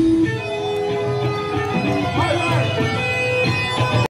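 Live punk-rock band ending a song: the drums drop out at the start and electric guitar notes ring on, sustained, with a voice over them.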